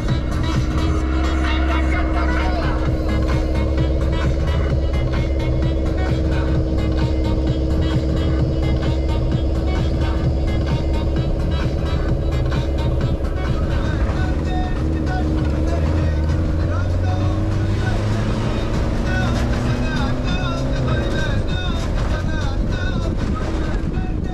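Open-top off-road vehicle's engine running steadily with road rumble, its pitch rising and falling from a little past halfway as the vehicle changes speed. Music plays over it.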